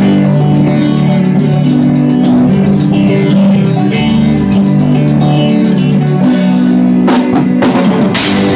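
A rock band playing live: electric guitar and electric bass holding chords over a drum kit keeping a quick, steady cymbal beat, with a burst of heavier drum hits near the end.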